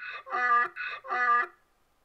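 Donkey braying: two hee-haws, each a higher, rasping drawn-in 'hee' followed by a louder, lower 'haw', after which it stops.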